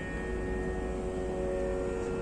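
Steady musical drone: several pitches held continuously, unbroken and even in level.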